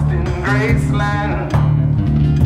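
Live blues-rock music: acoustic guitar played over a sustained, repeating low bass line layered with a looper, with a pitched part gliding upward near the middle.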